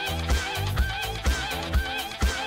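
Runway show music with a steady kick drum about twice a second and a short, high wavering figure repeated on each beat.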